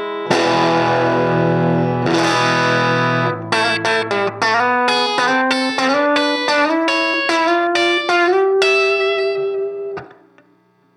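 Electric guitar, a Fender Nocaster with Twisted Tele pickups, played through a hand-wired 5-watt Fender '57 Custom Champ tube amp with an 8-inch Weber alnico speaker. A chord is struck about a third of a second in and rings for about three seconds. A run of single picked notes follows and ends on a held note that stops right at the end.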